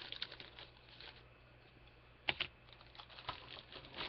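Light, scattered clicks and taps of plastic model-kit sprues being handled, with a sharper double click a little over two seconds in.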